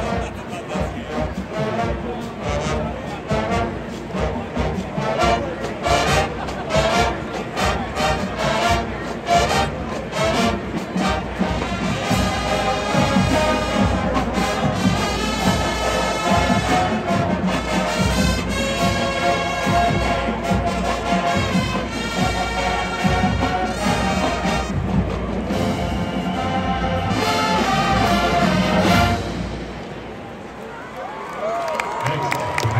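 Marching band playing live: massed brass and saxophones over a drumline. Drum strikes stand out in the first half. Held brass chords carry the second half, and the music cuts off about a second before the end.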